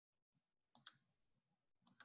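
Computer mouse button clicks: two quick clicks just under a second in, then another short click near the end.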